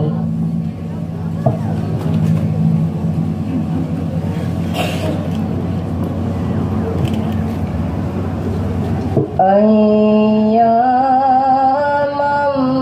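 A male voice chanting Qur'an recitation over a PA system in long, held melodic notes that step upward. It comes in about nine seconds in, after a pause between verses filled with background noise and a steady low hum.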